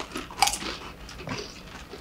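Crunching of a tortilla chip dipped in salsa as it is bitten and chewed, a run of short crackly crunches with the sharpest about half a second in.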